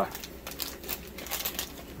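Shiny foil blind-bag packet crinkling and crackling in the hands as it is opened, a quick irregular run of small crackles.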